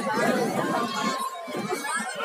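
Indistinct voices chattering, with no clear words.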